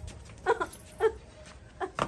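A woman crying in three short, high-pitched sobbing wails, each brief and falling in pitch.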